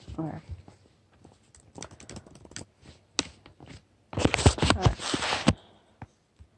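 Typing on a laptop keyboard close to the microphone: a few scattered keystrokes, then a loud, rapid flurry of keys about four seconds in.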